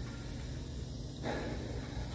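Quiet workshop background with a steady faint low hum, and a breathy exhale or soft spoken "so" a little past a second in.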